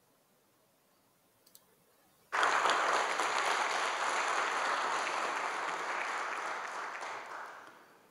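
Audience applauding in a large hall: the clapping starts suddenly about two seconds in, holds steady, then fades away near the end.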